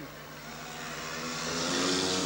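Several speedway bikes' 500cc single-cylinder methanol engines racing in a pack, getting steadily louder as the riders come closer.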